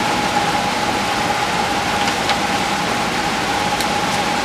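A steady machine noise with a constant mid-pitched whine running throughout, with a few faint ticks about two seconds in and near the end.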